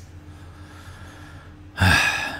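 About a second and a half of quiet room tone, then a man's sharp, audible intake of breath close to the microphone near the end.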